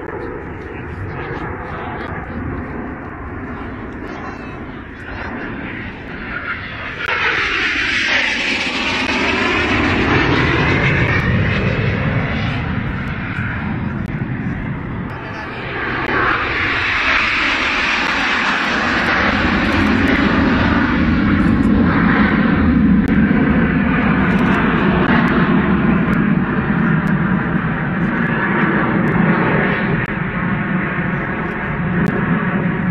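Jet engines of a formation of Aermacchi MB-339 jet trainers flying past overhead. The sound swells about seven seconds in, with a pitch that sweeps down as the planes pass. A second swell builds from about sixteen seconds and stays loud to the end.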